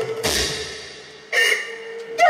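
Two percussion hits from the likay backing band, about a second apart, each ringing and dying away over a held note: a dramatic accent between lines.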